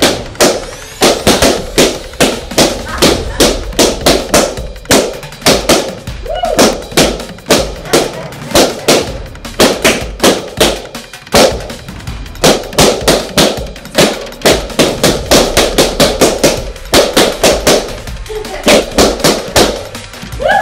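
Inflated latex balloons popping one after another with sharp bangs, several a second, as they are burst with a pin.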